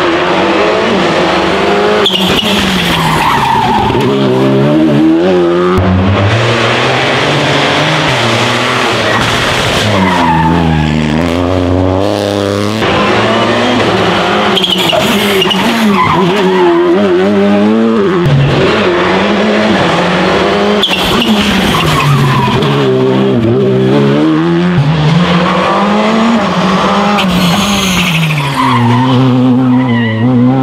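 Rally2/R5-class rally cars, Skoda Fabias among them, passing one after another through a tight tarmac hairpin. Each engine drops in pitch as the car slows for the bend, then revs hard back up through the gears on the exit. This happens again and again as car follows car.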